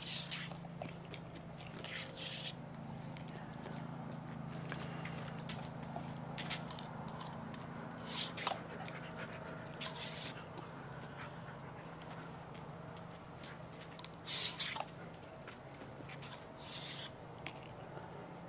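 A dog panting and snapping in short hissy bursts, with a few sharp clicks, over a steady low hum.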